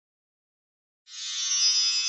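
Silence for about a second, then a bright, shimmering chime-like tone swells in and rings on: the start of a logo jingle.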